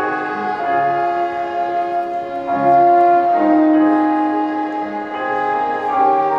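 Instrumental music from a violin ensemble with piano and keyboards, playing a slow piece in held chords whose notes change about once a second.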